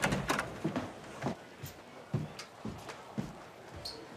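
Footsteps of hard-soled heeled shoes on a wooden floor, a brisk run of sharp clicks at about two to three steps a second.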